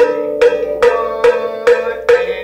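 Vibraphone played with mallets: a steady pulse of struck notes about every 0.4 s, the same high note recurring on each beat, with lower notes ringing on beneath.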